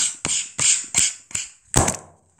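Phone being handled close to its microphone: a run of about five quick bumps and scuffs, the last and loudest near the end.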